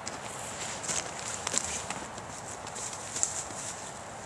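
Footsteps of a person walking over a forest floor with patches of snow, uneven steps coming closer.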